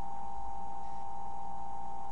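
A steady background hum with a constant mid-pitched whine, unchanging throughout: the standing noise of a webcam recording.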